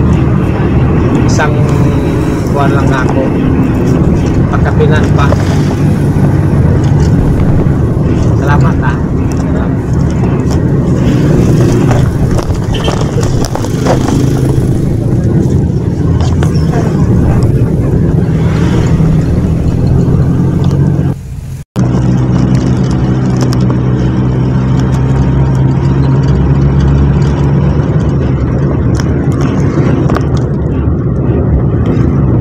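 Engine and road noise heard from inside a crowded jeepney's passenger cabin, a loud steady drone, with passengers' voices mixed in. The sound cuts out for an instant about two-thirds of the way through.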